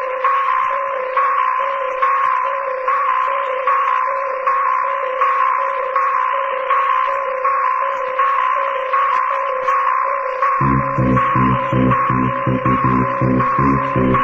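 Techno from a rave DJ set: a pulsing synth riff over two held tones, swelling a little more than once a second. About ten seconds in, a deep, fast-pulsing bass pattern comes in.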